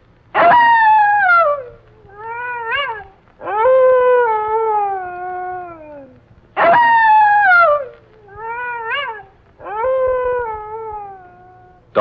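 Wolf-like howling sound effect for a werewolf: a long howl sliding down in pitch, a short rising-and-falling yelp, then a longer falling howl, with the whole pattern repeated once.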